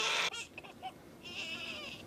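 An infant crying: a brief high-pitched wail at the start, then a longer thin, high wail near the end.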